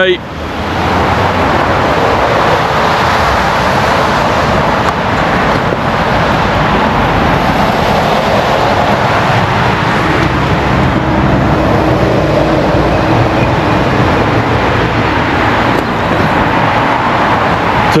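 Steady roar of road traffic, an even, continuous rush of passing vehicles with a faint low engine hum beneath it.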